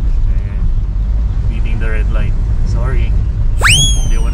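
Steady low rumble of a car driving, heard from inside the cabin. Near the end a sudden high tone sweeps up and holds.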